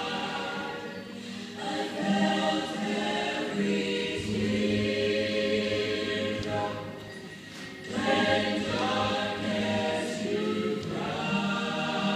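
Three women singing together in harmony, long held phrases with short breaths between lines.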